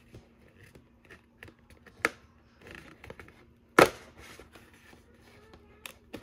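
Hands handling a cardboard and plastic toy box: light taps and scrapes, with two sharp clicks about two seconds and nearly four seconds in.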